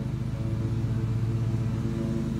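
An engine running steadily at an even speed, a constant low hum with a fast regular pulse.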